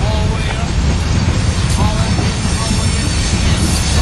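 Freight train's covered hopper and tank cars rolling past: a steady, loud rumble of steel wheels on the rails.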